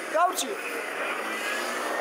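A car passing on a city street: a steady rush of engine and tyre noise with a faint, slowly rising whine.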